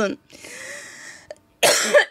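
A woman's long breathy exhale, then a short harsh cough near the end.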